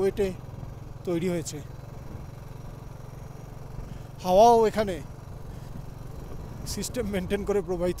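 Motorcycle engine running at a steady cruising pace under the rider, a low even hum, with brief bursts of a man's voice on top, the loudest about four seconds in.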